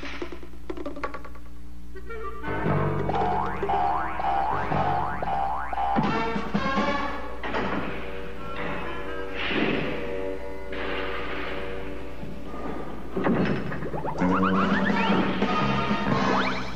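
Cartoon background music with comic sound effects mixed in. The music moves through short phrases broken by sudden strokes, with a run of quick rising slides near the end.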